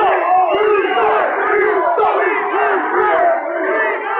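Loud crowd of many people shouting and cheering at once, their voices overlapping in a continuous din.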